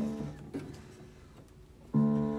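Baldwin spinet piano notes sounding as keys are handled: a note rings briefly at the start and is damped after about a quarter second, followed by a faint knock, then another note is struck right at the end.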